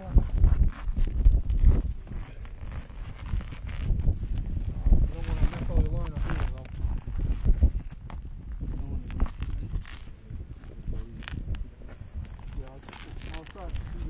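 Wind buffeting the microphone in low gusts, with crackling, rustling handling noise and a faint voice talking about five seconds in.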